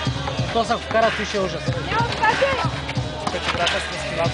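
Music with a gliding voice line over it, mixed with a basketball being dribbled on the concrete court, its bounces heard as short knocks.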